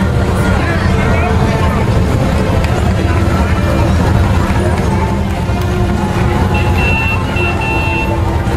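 A line of touring motorcycles and three-wheeled trikes riding slowly past at parade pace: a steady, low engine rumble, with people talking nearby.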